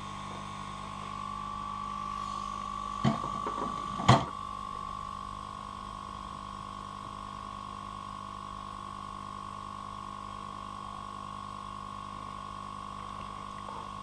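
Steady hum with a high whine from a Yihua 968DB+ hot-air rework gun's blower left running, with two short knocks about three and four seconds in, the second the louder.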